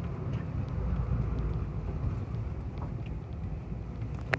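Car cabin noise on an unpaved road: a steady low rumble of tyres and engine with faint scattered rattles. The rumble swells about a second in as a large truck passes close alongside.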